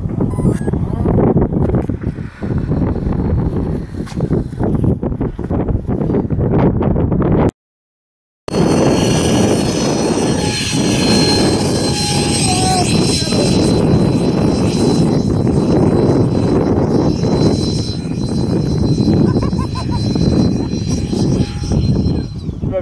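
Heavy wind rumble on the microphone. After a one-second dropout, the steady high-pitched whine of an electric radio-controlled model plane's motor and propeller in flight, over continuing wind.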